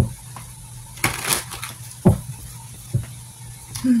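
A deck of tarot cards being shuffled by hand: a few short taps and a brief rustle of cards about a second in.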